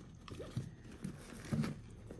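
A hand rummaging among items packed inside a small handbag: soft rustling and light knocks as things are shifted, a little louder about one and a half seconds in as a mesh pouch is pulled out.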